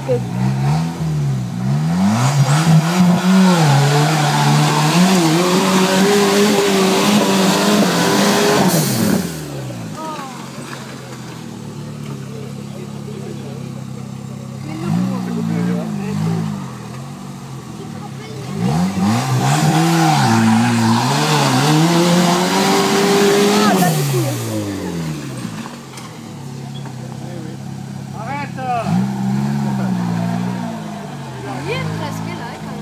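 4x4 off-road vehicle engine revving hard in two long bursts, its pitch climbing and falling under load, with a loud rushing noise over each burst, as on a steep off-road climb. In between it runs lower and quieter.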